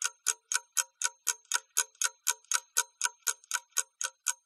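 Ticking clock sound effect, an even run of sharp ticks about four a second, timing the pause given for working out an exercise.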